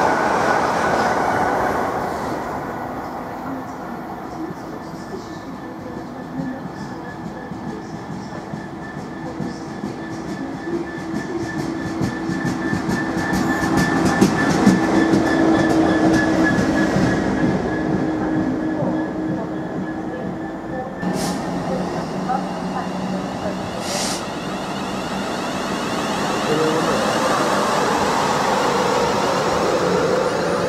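A diesel freight locomotive approaches and passes through the station. Its engine note and the wheel clatter build to a peak about halfway through, with a high steady whine, then fade. A second train's running sound rises near the end.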